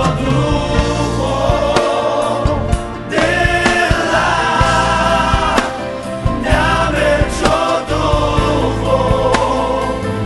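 Gospel song sung by a choir of voices over a band accompaniment with steady bass and drums.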